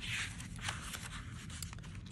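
Paper pages of an A6 Stalogy notebook being leafed through by hand: a soft rustle near the start, then light scattered paper clicks.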